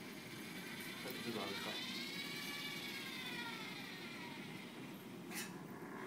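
SCORBOT-ER4u robot arm's DC servo motors whining as the arm swings across, the pitch rising and then falling as the move speeds up and slows down over about four seconds. A sharp click follows near the end.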